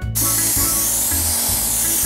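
Paint spray gun hissing steadily as it sprays paint. The hiss cuts in suddenly right at the start, with music underneath.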